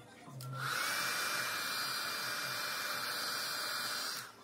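Handheld hair blow dryer switched on about half a second in. Its motor whine rises in pitch as it spins up, then it runs steadily with a strong rush of air.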